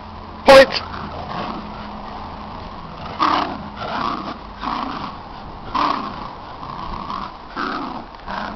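Dogs growling in play during a rope tug of war, in a run of rough growls every half second to a second, with one short, very loud outburst about half a second in.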